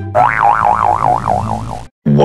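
Cartoon 'boing' sound effect: a warbling tone that wobbles up and down about four times a second, over a low musical bed, and cuts off suddenly near the end. It is the kind of dizzy, head-spinning effect laid over a stunned character.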